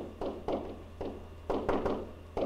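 A pen stylus tapping and knocking on a writing screen while a word is handwritten: about six short taps over two seconds, irregularly spaced, with a steady low hum underneath.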